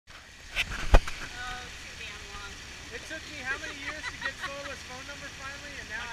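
Two sharp knocks in the first second, then people talking indistinctly.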